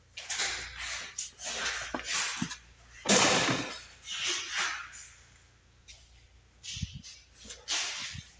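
Footsteps scuffing on a concrete floor, in an irregular series of short swishes, loudest about three seconds in, with a couple of low thumps near the end.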